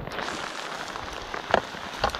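Heavy summer rain falling in a steady hiss. A single brief knock cuts through about one and a half seconds in.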